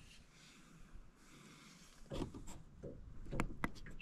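Mostly quiet, then a few faint clicks and short knocks in the second half.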